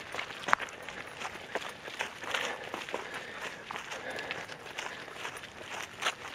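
Footsteps jogging over leaf litter and grass on a bush track, an irregular run of soft thuds and crunches.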